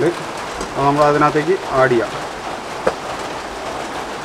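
A voice speaking one short phrase over a steady background hiss, with a couple of faint clicks.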